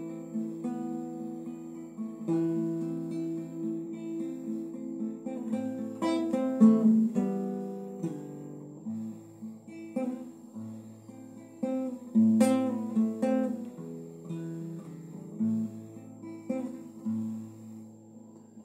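Solo classical guitar playing an instrumental passage: plucked chords and single notes that ring on. A deeper bass line joins about five seconds in, and a few sharper strummed strokes stand out along the way.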